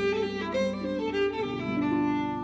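Violin playing a quick melody in stepping notes, with harp accompaniment underneath.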